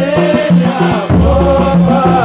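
A man's voice singing a Bajuni goma chant over a steady, repeating drum beat, part of a traditional Bajuni goma song.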